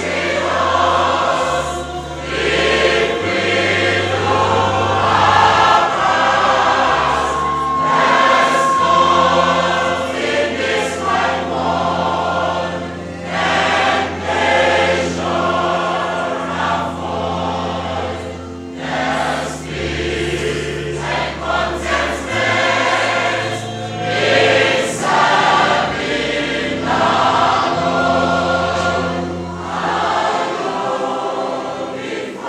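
Mixed church choir of men and women singing a hymn under a conductor, with long held low notes underneath.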